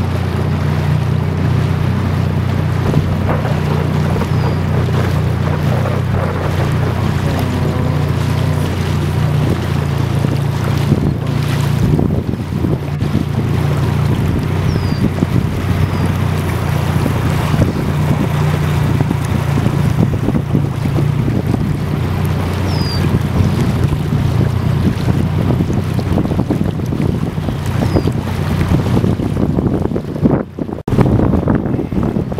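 Boat engine running with a steady low drone, with wind on the microphone.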